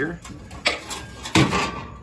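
Two short knocks in the work area, one about two-thirds of a second in and a louder one near a second and a half, the second followed by a brief rattle.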